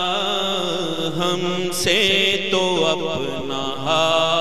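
A man singing a naat, an Urdu devotional poem, in long drawn-out phrases with a wavering, ornamented pitch; a new phrase begins about two seconds in.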